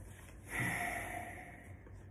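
A man's sharp breath out through the nose, starting about half a second in and fading over about a second.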